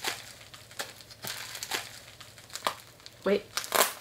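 Plastic bubble wrap crinkling in the hands as it is squeezed and pulled at to get it open, in short scattered crackles.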